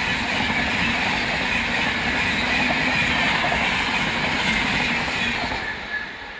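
Rajdhani Express LHB passenger coaches running past at speed close by: a loud, steady rush of wheels on rail with some clickety-clack. It fades near the end as the last coach goes by.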